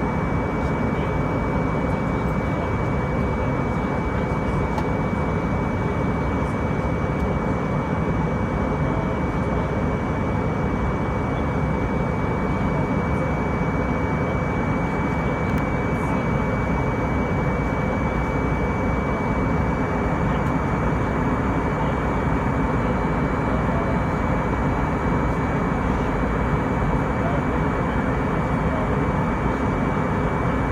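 Steady airliner cabin noise on descent: the even rumble of engines and airflow, with a thin constant high whine over it.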